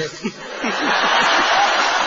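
Audience laughing, a wave of laughter swelling about half a second in and holding.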